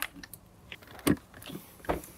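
Clicks and knocks of hard plastic as a Jeep Wrangler JK dash bezel is handled and its wiring connectors are plugged back in. There are a few sharp clicks, the loudest about a second in and near the end, with lighter ticks between.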